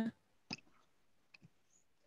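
Two short, faint clicks about a second apart, in an otherwise quiet pause.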